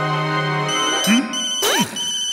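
Sustained romantic film-score music that breaks off about a third of the way in, replaced by an electronic telephone ringtone: high tones pulsing on and off. Quick sliding cartoon sound effects run alongside it.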